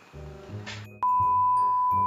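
A steady, loud single-pitch beep, the test tone that goes with TV colour bars, cuts in about a second in over background music.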